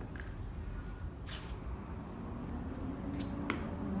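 Sports tape being handled for foot taping: a short rustling burst about a second in and a couple of faint clicks near the end, over a steady low room hum.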